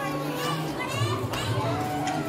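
A song playing, with a steady bass line, under children's voices and chatter from a crowd.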